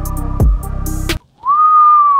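Beat-driven background music with falling bass drops, which cuts off abruptly a little past halfway. A single long whistle from a person follows: one steady note that sinks in pitch near the end.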